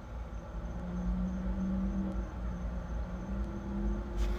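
Steady low mechanical hum with faint held tones, and a few faint ticks.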